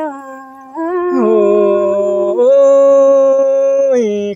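A single voice singing long, drawn-out notes of Tai Dam khắp folk song, unaccompanied. The pitch steps up after about a second and again about halfway through, and the last held note is the loudest.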